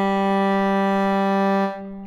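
Sampled Amati viola from Native Instruments' Cremona Quartet playing one long sustained bowed note on an open string, rich in overtones and open-sounding. The note holds steady and dies away near the end.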